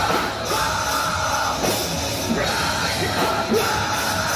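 Metalcore band playing live: heavy guitars and drums under screamed vocals.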